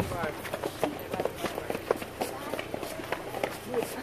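People talking and calling out close by, over quick footsteps and shuffling as they move alongside a car.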